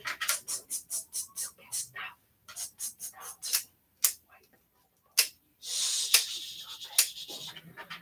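A dog panting quickly in short breaths, about four or five a second, then more unevenly. A few single sharp clicks follow, about a second apart: plier-type nail clippers cutting the dog's nails. There is a brief rustling scuffle near the end.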